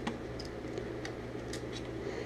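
A few faint clicks and ticks of plastic Lego Bionicle parts being handled, over a steady low hum.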